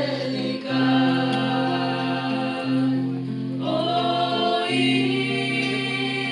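A mixed-voice church choir singing a slow carol, accompanied by acoustic guitar and double bass. Beneath the voices a low bass note is held and changes about every two seconds.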